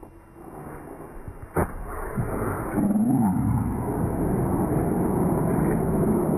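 A single sharp thud of a punch landing about a second and a half in. Then a loud, sustained swell of crowd noise with a drawn-out cry in it.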